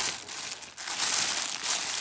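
Thin clear plastic polybag crinkling as hands grip and pull it open, with a brief lull a little under a second in.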